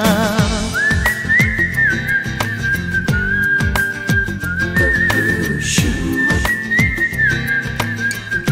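Whistled melody in a Hindi film song: long, high held notes with small slides, over a steady drum beat. A last sung note with vibrato fades out in the first second, before the whistling begins.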